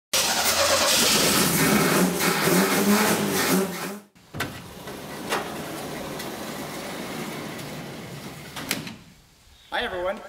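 For about four seconds, the Saab Sonett's V4 engine runs loudly with voices over it, then cuts off suddenly. A large sliding barn door follows, rolling open on its track with a steady rumble and a couple of sharp clacks.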